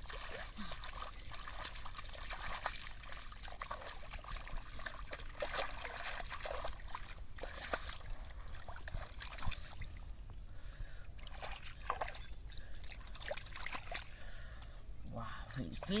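Bare hands digging and scooping through wet mud in shallow muddy paddy water to hunt for eels: irregular splashes, sloshing and squelches. A short exclamation is heard right at the end.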